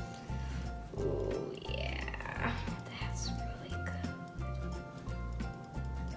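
Background music with a steady bass beat and held tones. From about a second in, a short sliding, voice-like sound rises and falls over the music.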